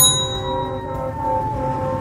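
A bright bell-like ding at the very start, ringing out for about half a second, over background music with long held notes.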